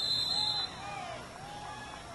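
A referee's whistle blown in one long steady blast that stops about two-thirds of a second in, with distant shouting voices from players and spectators.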